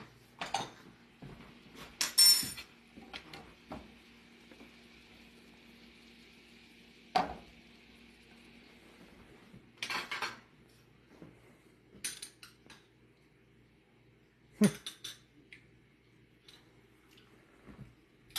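Scattered clinks and knocks of metal utensils against pans and dishes, the loudest about two seconds in, over a faint steady hiss.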